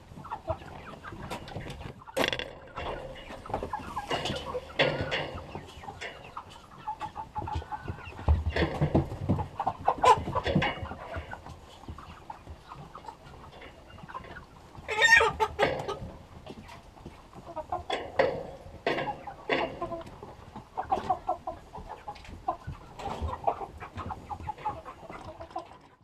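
A flock of white chickens clucking, a run of short calls overlapping one another, with louder calls about ten and fifteen seconds in.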